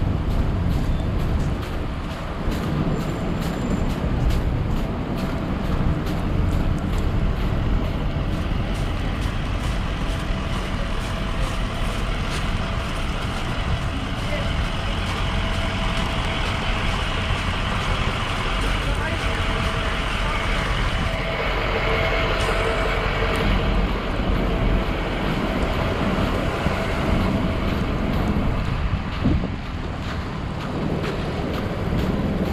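City street traffic: cars, trucks and a shuttle bus passing on a slushy, snow-covered road, over a steady low rumble of wind on the microphone. About two-thirds of the way through, a vehicle engine hums more clearly for several seconds.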